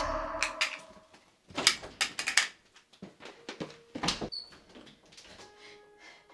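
A young woman gagging and retching in short, irregular bursts, forcing herself to vomit over a toilet.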